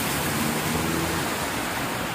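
Heavy rain pouring onto a flooded street, a steady hiss of rain striking standing water.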